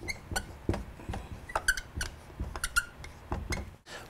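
Dry-erase marker writing on a whiteboard: irregular taps and strokes with several short squeaks.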